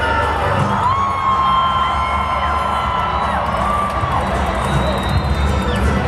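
Live regional Mexican band music played through a stadium PA, with long held notes stepping up and down in pitch over a steady bass and drums, and a large crowd cheering.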